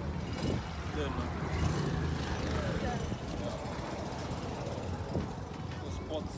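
Muffled voices of people talking as they walk, over a steady low rumble, picked up by a camera carried low and jostled in hand.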